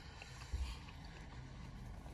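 Quiet, steady low rumble of a car cabin with faint chewing of a sandwich, and a soft thump about half a second in.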